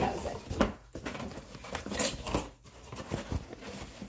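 Chanel cardboard box being handled: the lid and box slide, rub and scrape against each other in a run of short strokes, with sharper scrapes about half a second in and about two seconds in.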